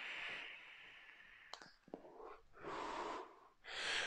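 A mouth-to-lung draw through a Kayfun Lite–style rebuildable tank: a hissing pull of air through the restricted airflow lasting about a second and a half. Two short clicks follow, then two shorter breaths near the end.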